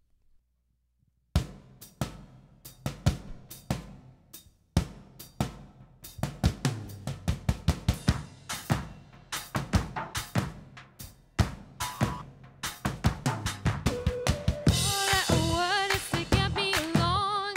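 A live drum kit starts a beat about a second in, with bass drum, snare and hi-hat. The beat grows denser and louder as it goes. Near the end a woman's singing voice comes in over the drums.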